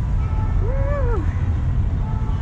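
A loud, steady low rumble, with a person's voice calling out briefly in a single rising-then-falling tone near the middle.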